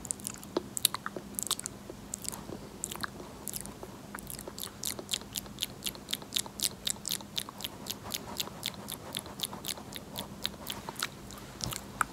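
Close-miked ASMR mouth sounds: crisp, wet clicks, scattered at first, then a quick run of about four a second from about four seconds in until near the end.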